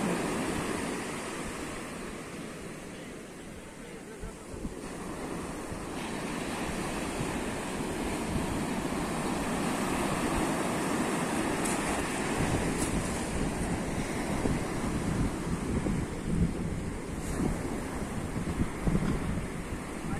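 Ocean surf breaking and washing up a sandy beach, a steady rush that dips a few seconds in and swells again, with wind buffeting the microphone.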